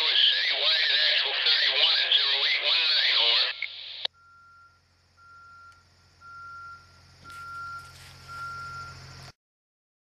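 A railroad radio scanner plays a garbled, narrow-sounding voice transmission for about three and a half seconds, which ends with a squelch click. Faint high beeps follow about once a second over a low hum, and then the sound cuts off abruptly shortly before the end.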